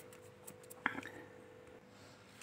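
Faint, soft scraping and ticking of fingers mixing ground dry ginger and raisin powder in a steel bowl, with one sharper click just before the one-second mark.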